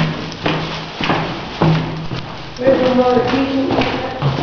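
People laughing and voices with no clear words, broken by several short, sharp knocks.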